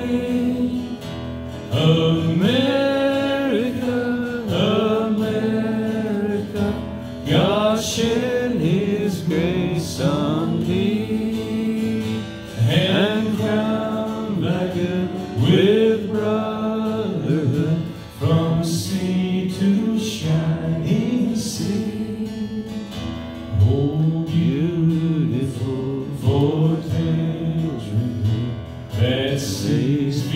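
A man sings solo, accompanying himself on a strummed acoustic guitar, amplified through a microphone and PA. His sung phrases are held and gliding, with short breaks between them, over guitar that plays without a pause.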